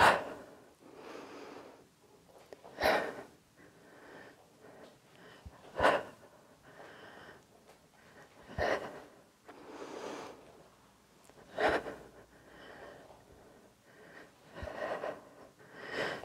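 A woman breathing hard during a dumbbell swing exercise: a short, sharp breath out about every three seconds, one with each swing, with quieter breaths in between.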